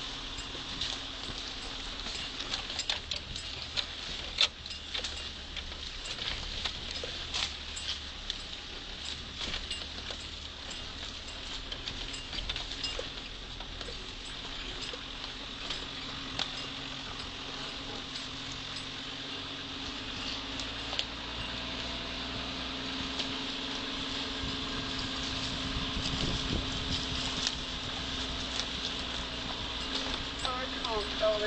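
Fire-service four-wheel-drive vehicle driving slowly over a rough dirt trail: the cab rattles and knocks over the bumps, many short clicks, with the engine running low underneath and getting a little louder in the last third.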